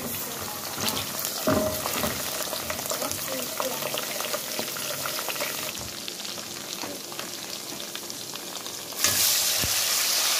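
Sliced onions frying in hot palm oil, sizzling and crackling, with a silicone spoon stirring in the pot. About nine seconds in the sizzle jumps suddenly louder as pieces of smoked guinea fowl drop into the oil.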